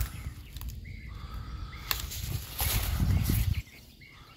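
Outdoor wind buffeting a handheld camera's microphone: a low rushing noise that stops abruptly near the end, with a few faint bird chirps.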